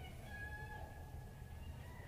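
Faint ice-arena ambience with a distant high-pitched call held for about a second.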